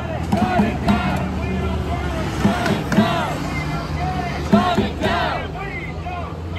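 A crowd of protesters shouting and whooping slogans in scattered raised calls, over a steady low rumble of street traffic.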